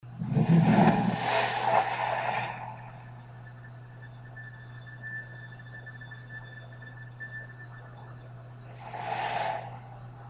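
Logo-sting sound design: a loud whoosh with a low rumble hits at the start and fades over a few seconds, leaving a steady low synth drone with faint high tones, then a second whoosh about nine seconds in.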